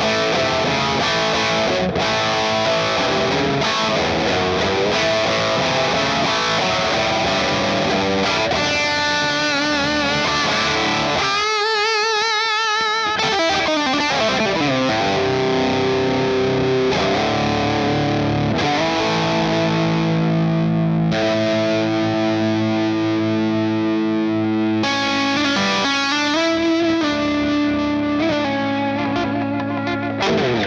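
Electric guitar played clean to lightly driven through a J. Rockett Airchild 66 compressor pedal, an unbroken improvised passage. It has a wavering vibrato phrase about twelve seconds in and long held notes in the second half.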